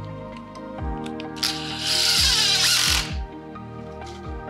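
Cordless drill driving a screw into timber edging, running for about a second and a half in the middle, over background music.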